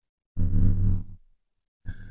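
A man's low, steady-pitched groan lasting under a second, with another short vocal sound starting near the end.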